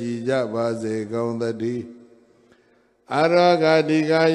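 A Buddhist monk's voice chanting Pali blessing verses, holding each note at a steady pitch. It breaks off for about a second just past the middle, then comes back louder near the end.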